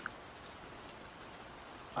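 Steady background rain ambience, a soft even patter of rain with no other sound over it.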